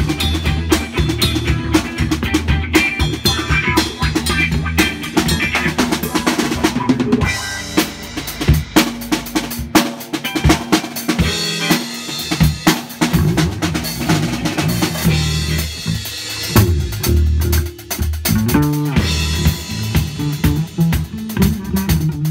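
A live band playing a funk jam: drum kit, electric bass and electric guitar. For several seconds midway the bass drops away and the drums carry the groove, then the full band comes back in.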